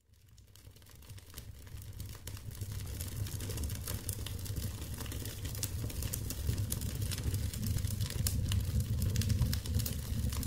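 Wood fire crackling in a hearth, fading in over the first few seconds: irregular sharp pops and snaps over a steady low rumble.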